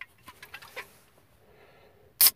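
A few faint, irregular clicks and taps in the first second: an aluminium energy drink can being handled close to the microphone.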